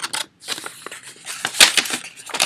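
Crinkling and clicking of small items being handled close to the microphone, with a sharp click about one and a half seconds in.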